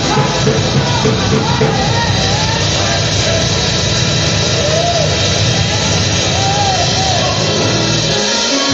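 Live gospel music from a church band, loud and steady, with a voice sliding up and down between notes over the full accompaniment.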